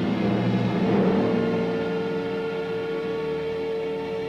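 Symphony orchestra playing sustained chords. About a second in, a long held note enters in the middle register and carries on over the lower parts.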